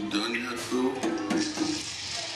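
Recorded character voice playing over the ride's speakers, with background music and a few light clicks.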